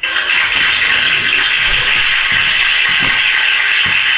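Soundtrack of a television comedy sketch played through a TV set's speaker: a loud, dense sound that starts suddenly, with a few low thumps through it.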